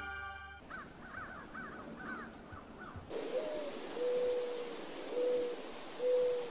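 Outdoor bird calls. The closing music cuts off just after the start, then a bird gives about eight quick chirps in the first half. After that, over a steady hiss, come three or four low, drawn-out calls, each about half a second long.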